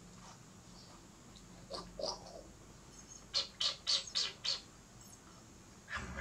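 A baby monkey's high-pitched squeaks: a couple of short calls about two seconds in, then a quick run of five sharp squeaks about a second and a half later.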